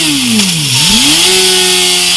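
Yamaha R6 inline-four engine through a Mivv Souno slip-on exhaust, held at a steady rev. Shortly after the start the revs fall away for about three quarters of a second, then climb straight back to the same steady pitch.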